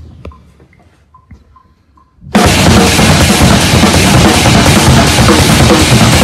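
A few faint ticks, then about two seconds in an acoustic drum kit comes in loud, played fast and densely across drums and cymbals.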